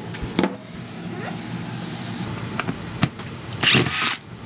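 Cordless drill whirring briefly at full speed near the end, backing a screw out of the bus-bar mold frame, after a few light knocks from handling the parts.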